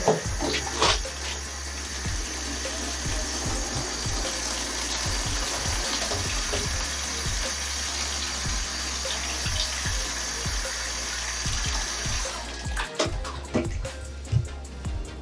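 Tap water running from a faucet into a plastic wash basin in a stainless steel sink, a steady rush that stops about twelve seconds in. A few knocks follow as the filled basin is lifted out.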